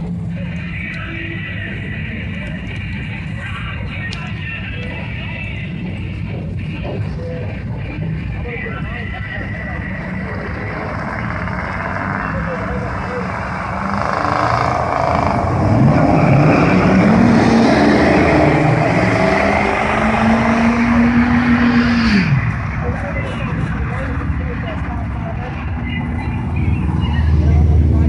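Ford IDI diesel pickup trucks idling at the drag-strip start line, then launching hard. About halfway through, the engine note climbs, dips at a gear change, climbs again and holds for a couple of seconds, then falls away as the trucks run off down the track.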